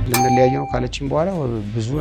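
A single sudden metallic ding that rings for under a second, followed by a man's drawn-out, wavering voice exclamation.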